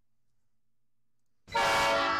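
Near silence, then about a second and a half in a train horn starts sounding loudly as one steady chord.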